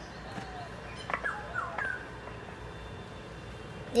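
A dog yipping three or four times in quick succession, short calls falling in pitch, a little over a second in.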